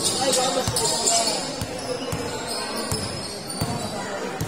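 A basketball being dribbled on a hard court floor, several separate bounces at irregular intervals, with voices in the background.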